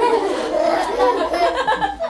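Children's voices talking, with some light laughter.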